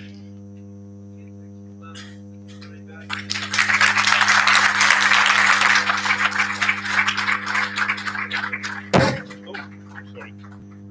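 Audience applause starting about three seconds in and running for around six seconds, over a steady electrical hum. It is cut short by a single loud thump, like a microphone being knocked.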